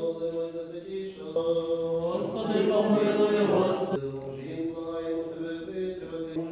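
Eastern-rite liturgical chant: voices singing long held notes that step from pitch to pitch, growing fuller and louder in the middle.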